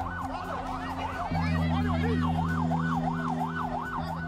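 An emergency-vehicle siren in a fast yelp, its pitch sweeping up and down about three times a second. Underneath runs a low sustained musical drone that shifts chord about a second in.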